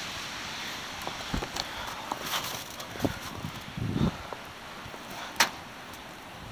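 Faint steady outdoor hiss with a few light knocks and handling sounds, a soft low thud about four seconds in and a sharp click near the end.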